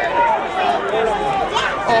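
Spectators' voices shouting and cheering a player's run, several at once, with an "oh" near the end.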